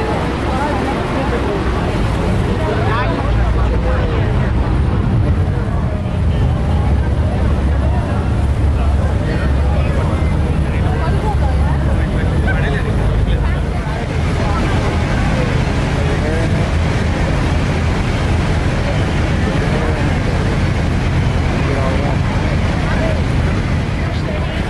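Steady, loud low rumble of a tour boat under way near the falls, with passengers' indistinct chatter over it; the sound shifts slightly about halfway through.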